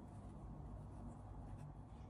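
Faint scratchy rubbing of yarn being drawn through and over a crochet hook as single crochets are worked, over a low steady room hum.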